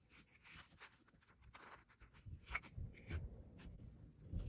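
Faint rustling and light taps of paper sticker sheets being handled, with a few soft knocks on the desk in the second half.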